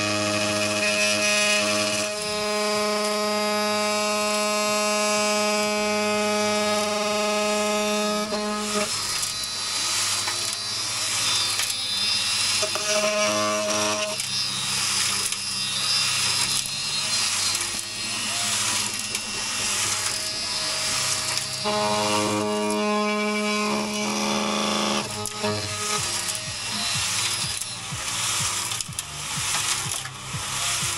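Handheld cordless power tool buzzing at one steady pitch for about nine seconds, stopping, then running again briefly around the middle and for about three seconds later on, with background music throughout.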